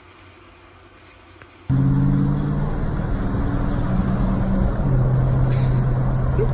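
Faint steady room hiss. Then a sudden cut, about two seconds in, to loud wind rushing over the microphone and road noise from a moving car, with a low hum that changes pitch in steps.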